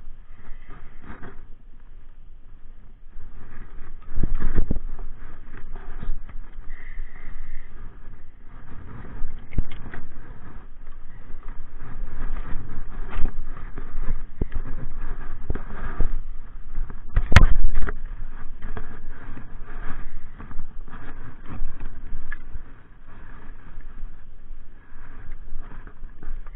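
A spinning reel being cranked by hand, the line wound all the way in, under loud, uneven rumbling and handling knocks on the microphone. A sharp knock about 17 seconds in is the loudest sound.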